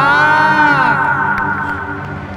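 Several men's voices cheering together in excitement: a rising whoop that is held as one long high 'ooh' and then fades.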